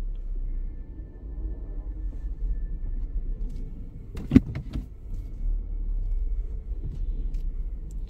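Hyundai car engine idling steadily at about 900 rpm, heard inside the cabin as a low rumble while the car creeps along at walking pace. A few sharp clicks come about four seconds in, one of them the loudest sound here.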